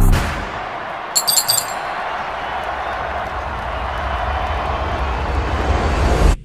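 The beat of the song drops out and the track's ending follows as a steady wash of noise, with a brief jingle of bright chime-like clinks about a second in. The noise swells slightly, then cuts off suddenly just after the end.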